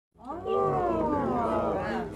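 A person's voice held in one long, drawn-out exclamation, sliding slowly in pitch.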